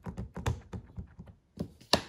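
An ink pad tapped repeatedly onto a rubber stamp to ink it, a quick uneven run of light taps with a louder knock near the end.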